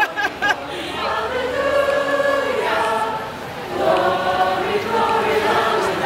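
A crowd of marchers singing together, voices holding long notes in unison with slow shifts in pitch.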